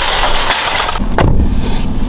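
Empty metal shopping cart rolling and rattling across parking-lot asphalt. About a second in it gives way abruptly to a steadier low hum with a single knock.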